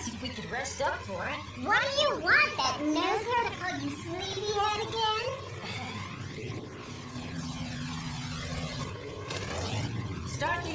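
A young voice vocalizing for the first half, its pitch rising and falling without clear words, followed by a quieter low steady hum.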